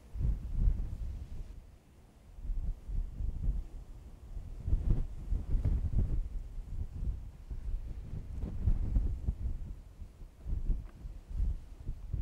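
Wind buffeting the microphone in uneven gusts, a low rumble that rises and falls, easing briefly about two seconds in.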